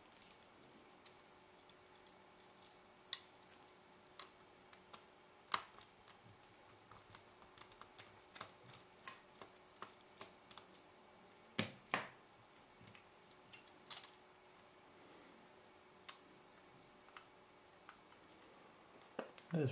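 Faint, irregular small clicks and ticks of a precision screwdriver working tiny screws out of the plastic rear assembly of a Canon EF-S 17-85mm zoom lens, with a few louder clicks scattered through.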